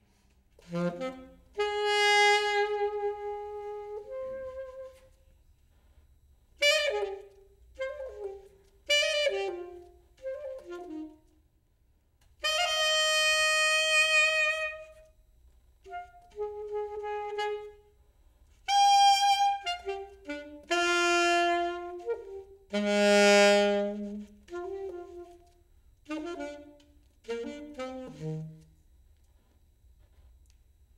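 Saxophone playing free, broken phrases: held notes of one to two seconds between clusters of short notes, with brief quiet gaps between the phrases.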